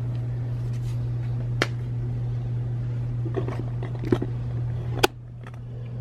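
Sublimation paper and heat tape being peeled off pressed socks on a heat press: faint paper rustling with a few sharp clicks, the loudest about 5 s in. A steady low hum runs underneath and drops in level at that last click.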